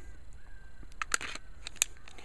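About half a dozen short, sharp clicks in the second half, from a Glock 29 10 mm pistol being handled and turned over in the hands.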